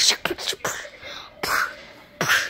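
A child making breathy mouth sounds close to the microphone: short clicks and hissing bursts, a quieter spell, then another burst near the end.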